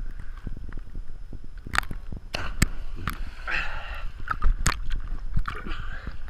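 Water sloshing and splashing against a waterproof action camera riding at the water's surface, with irregular sharp splashes over a steady low rumble.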